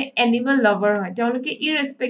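Speech only: a woman lecturing, talking steadily with only brief breaths between phrases.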